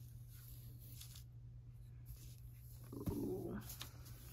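Quiet room with a steady low electrical hum, and a brief faint voice-like sound about three seconds in.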